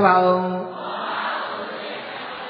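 A monk's voice holding one drawn-out syllable at a steady pitch for well under a second, in a chant-like delivery, then a pause filled with steady hiss.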